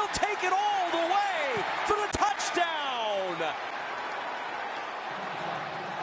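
A voice shouting excitedly in high, bending cries over stadium crowd noise, with a few sharp clicks and a long falling cry about three seconds in. After that only the crowd's steady noise remains.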